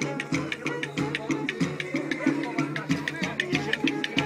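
Kemane, a small bowed folk fiddle, playing a lively dance tune with gliding notes over a quick, steady percussive beat.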